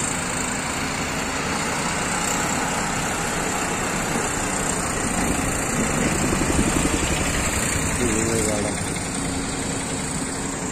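Steady motor vehicle engine and road noise, with faint voices in the background during the second half.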